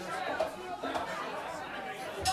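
Audience chatter: many people talking at once, with no music playing.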